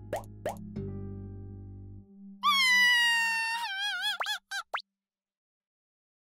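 Cartoon music and sound effects: two quick rising chirps, a held low musical chord for about a second, then a high wavering tone with heavy vibrato for about two seconds that breaks into fast up-and-down wobbles and cuts off.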